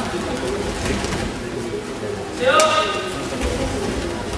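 Many voices talking at once in a large hall. About two and a half seconds in, one voice gives a loud, rising shout.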